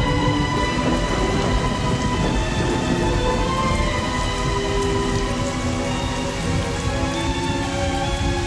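Steady heavy rain with a low rumble of thunder, over the held notes of a dramatic music score.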